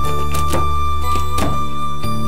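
Background music with sustained notes, over which a cleaver chops peanuts and almonds on a wooden chopping block: about four knocks, unevenly spaced.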